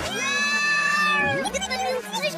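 A cartoon character's drawn-out, high-pitched vocal sound played backwards, held for about a second and a half, then a short pitch glide and choppy reversed voice fragments near the end.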